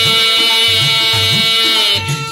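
Instrumental break in a Bengali folk song: a sustained melody line held on long notes, with a regular low hand-drum rhythm beneath and no singing.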